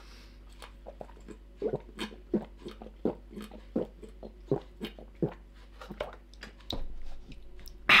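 A man gulping milk straight from the carton, a steady run of swallows at about three a second.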